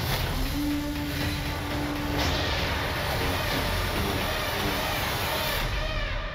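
Trailer soundtrack playing: music under a dense, rumbling bed of sound effects, with a held low tone for about the first two seconds.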